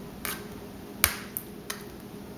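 Metal spoon clicking a few times against the pan and jar while sauce is spread over a tortilla in an aluminium foil pie pan: four short sharp clicks, the loudest about a second in.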